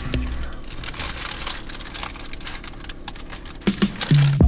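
Paper sandwich wrapper crinkling and rustling in the hands in irregular small clicks, over a low steady hum inside a car.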